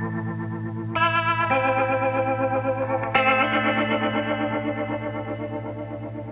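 Background music of sustained chords that change about a second in and again about three seconds in.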